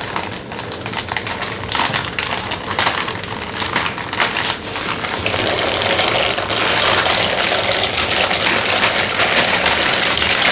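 Water at a rolling boil in a cooking pot, a dense crackle of small bubbling clicks. About five seconds in, a louder, steadier hiss and rustle sets in as dry macaroni is poured from its plastic bag into the boiling water.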